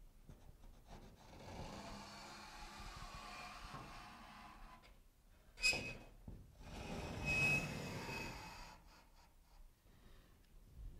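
Faint scratching of a pencil drawn along drywall paper while tracing an arch curve against a bent wire guide, in two long strokes. A brief sharp squeak comes about halfway through, between the strokes.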